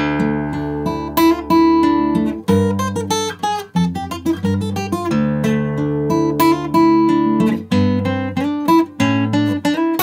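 Acoustic guitar playing a quick run of picked single notes over ringing bass notes at full tempo, the last note played wrong.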